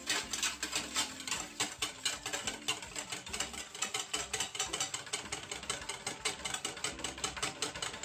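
Wire whisk beating a raw egg in a stainless steel mixing bowl, its wires clicking against the metal sides in a fast, steady rhythm of several strokes a second.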